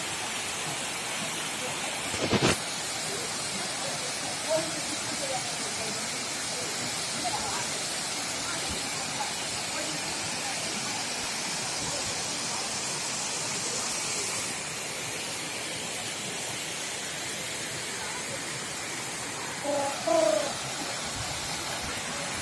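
Steady rushing of a waterfall cascading down a rock face into a pool, its hiss easing a little about two thirds of the way in. A single short knock comes about two seconds in, and faint voices are heard now and then.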